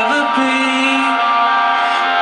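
Live band music through the stage PA: held keyboard notes that step in pitch, with thin bass.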